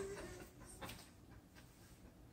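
Faint exertion breathing from a person just out of a balance hold, opening with a short whimper-like voiced sound.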